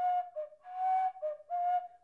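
Nose flute played with the breath from one nostril: a slow tune of about five held, whistle-like notes stepping up and down between two or three pitches.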